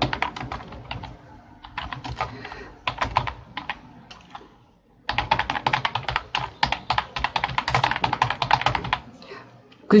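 Typing on a computer keyboard in quick runs of keystrokes, with a short pause about halfway through.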